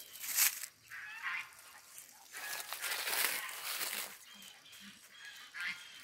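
Domestic geese honking faintly, a few short calls scattered through, over the crunch and rustle of footsteps in dry fallen leaves.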